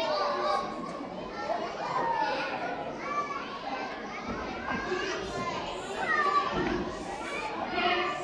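Many young children's voices chattering and calling out at once, overlapping with no music playing.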